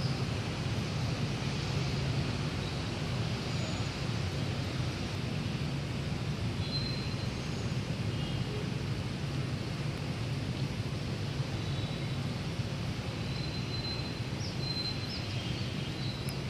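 Steady city ambience: the constant low rumble of distant street traffic, with a few brief high bird chirps in the second half.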